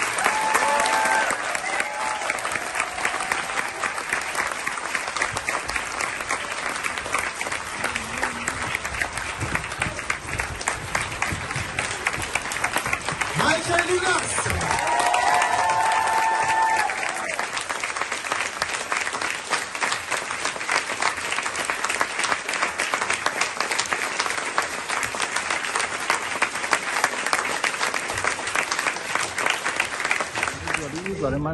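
Large theatre audience applauding at length, dense, steady clapping. Voices call out above it near the start and again around the middle.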